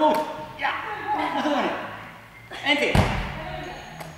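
A medicine ball hits a hard sports-hall floor once with a heavy thud about three seconds in, as it is bounced to a seated goalkeeper. Voices talk before the thud.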